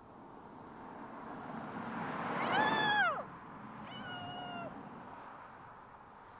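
A car drives past, its noise swelling to a peak about three seconds in and then fading. Its horn sounds twice as it passes: the first honk drops sharply in pitch as the car goes by, and the second is lower and steady.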